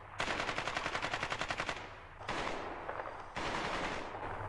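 Automatic gunfire from a mobile shooting game: one fast burst of rapid shots lasting about a second and a half, then two separate blasts that each trail off in an echo.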